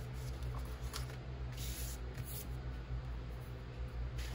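Tape pulled off a roll in three short rasps, between about one and two and a half seconds in, with paper being handled and pressed down around them.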